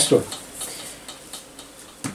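Faint rustling and scraping of a photo print being slid over a sheet of card on a tabletop by hand.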